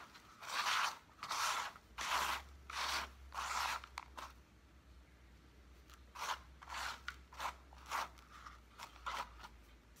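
Hands sweeping gritty potting mix of coco coir and perlite across a plastic tray, a scraping crunch with each stroke. About six strokes come in the first four seconds, then after a short lull several shorter, sharper strokes.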